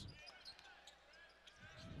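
Near silence on a basketball court, with faint short sneaker squeaks on the hardwood and a ball bouncing.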